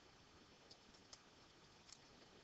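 Near silence with three faint computer keyboard key clicks.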